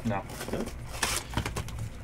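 Wrapper on a hockey card hobby box being torn open and crinkled, with one sharp tearing rasp about a second in.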